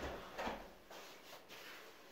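A door clicking shut, followed about half a second later by a duller knock and a few faint knocks and rustles.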